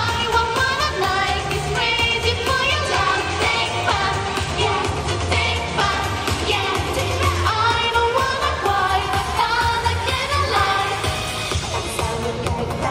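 Japanese idol pop song: female singing over a backing track with a steady bass beat.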